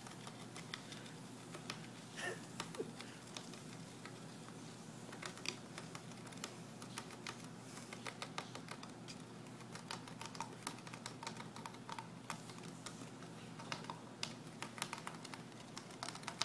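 A gerbil making faint, rapid, irregular clicks and scratches at a small block, the clicks growing denser from about five seconds in.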